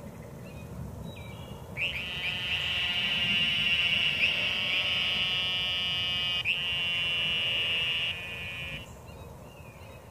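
A cicada's loud, steady buzzing call, starting sharply about two seconds in, with a brief catch partway through, then stepping down and fading out near the end.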